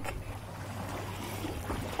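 Faint, steady outdoor background noise: a low, even rush with a constant low hum and no distinct sounds.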